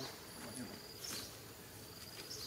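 High-pitched insect trill, a steady buzzing tone that stops about halfway through, over faint outdoor ambience with a brief rustle about a second in.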